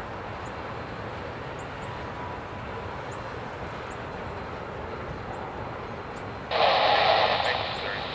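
Loaded freight tank cars rolling slowly past with a steady low rumble. About six and a half seconds in, a loud burst of hiss from a railroad scanner radio breaks in for about a second and a half.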